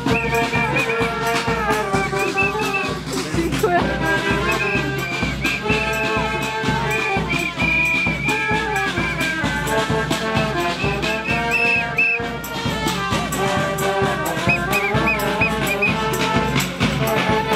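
A brass band playing a lively tune on horns over a steady bass-drum beat.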